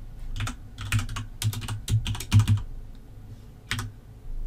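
Typing on a computer keyboard: a quick run of key clicks for about two and a half seconds, then a pause and one last keystroke near the end.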